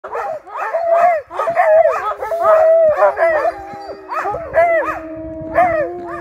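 A team of harnessed sled dogs barking and yelping in quick, overlapping calls, with one long, level howl held underneath from about halfway through.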